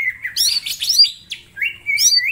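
Male green leafbird (cucak ijo) singing a loud, fast, varied song of whistled glides, looping notes and sharp chatters, with a brief pause about halfway through before it runs on with rising whistles.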